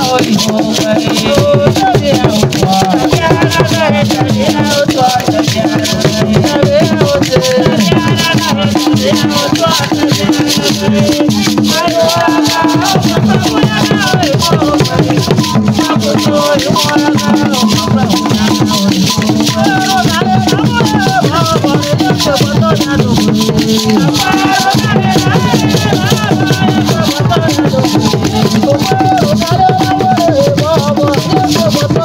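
Live traditional Ewe drum ensemble: barrel drums struck with sticks in a fast, dense, unbroken rhythm, with rattles, and a group of voices singing over the drums.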